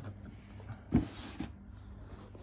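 Handling noise from a mesh drawstring boot bag and its box: a single sharp knock about a second in, then a brief rustle.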